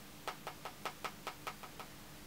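An eyeshadow brush tapping lightly and quickly against the palette, about ten small taps in under two seconds.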